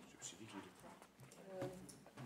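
Quiet meeting-room pause: faint room tone with a few small clicks and a brief faint voice about one and a half seconds in.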